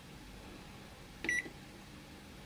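Samsung convection microwave oven's control panel giving one short, high beep as a button is pressed, about a second in, over a faint steady background hum.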